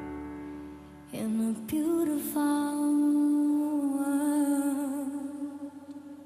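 A woman singing a slow ballad over soft, sustained accompaniment. The voice comes in about a second in and holds one long note with vibrato that fades near the end. It is drenched in heavy reverb and delay.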